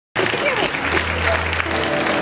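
Live concert audience applauding and cheering, cutting in abruptly at the start. A held low note and a sustained chord from the band's amplified instruments ring underneath from about a second in.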